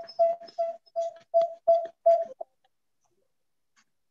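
A repeated short beep of one steady pitch, about three beeps a second, which stops about two and a half seconds in.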